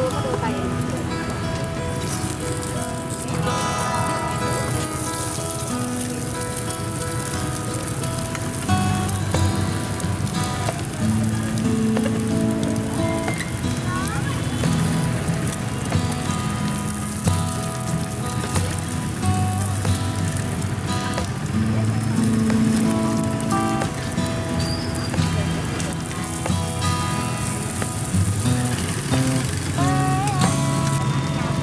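Background music over the steady sizzle of rice-flour cake cubes and egg frying in oil on a large flat pan (Vietnamese bột chiên). The music's low notes grow stronger about nine seconds in.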